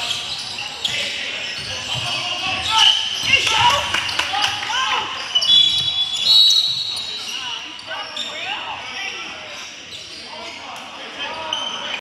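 A basketball being dribbled and bounced on a hardwood gym floor, with sneakers squeaking and players' voices calling out, all echoing in a large hall. A few short high squeaks come about six seconds in.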